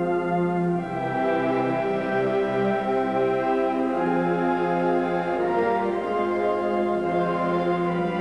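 Concert band of woodwinds and brass playing a slow passage of held chords, the harmony changing about a second in and again a little past the middle.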